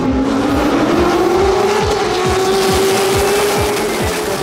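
Stock Car Pro Series race cars at full throttle down the main straight: one engine note climbs steadily as that car accelerates, while several others go by with drones that fall in pitch.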